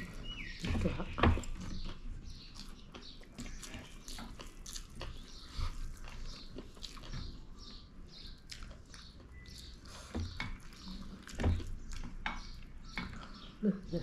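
Two people eating chicken biryani with their hands: close chewing and mouth clicks throughout, with a few louder thumps about a second in and again near the end.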